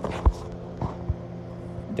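Steady low electrical hum from the running aquarium equipment (pumps, protein skimmer, lights), with three light knocks in the first second or so.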